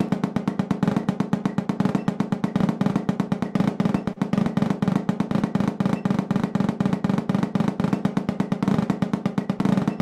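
Snare drum played with sticks in a loud, dense, even stream of strokes forming a roll: the roll-building warm-up, in which notes are added in each hand until they run together into a sustained roll.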